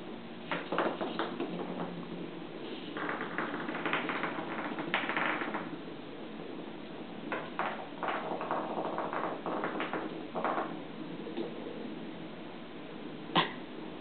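Small battery-powered toy bug buzzing and rattling as it scuttles over a hardwood floor, in uneven spells, with a single sharp tap near the end.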